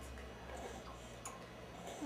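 Two infants sucking on baby bottles, with a few faint, irregular clicks from the nipples over a low room hum.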